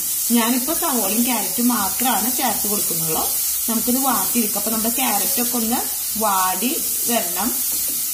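Diced vegetables and dried red chillies sizzling in oil in a steel pan as they are stirred with a wooden spatula, a steady hiss under a voice that talks through most of the time.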